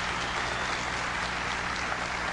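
A large audience applauding, steady even clapping.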